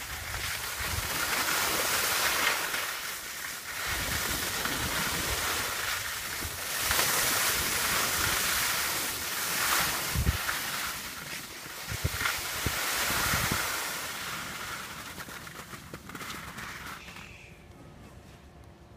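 Wind rushing over a phone's microphone, with skis sliding on packed snow during a downhill run, and a few low thumps in the second half. The noise fades over the last few seconds as the skier slows to a stop.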